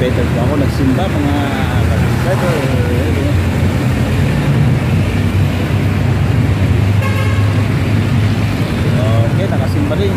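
Steady road traffic rumble, with a vehicle horn giving a short toot about seven seconds in. People's voices can be heard in the first few seconds.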